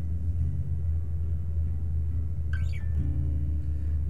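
Acoustic guitar played between sung lines, its notes held and changing about three seconds in, over a steady low rumble.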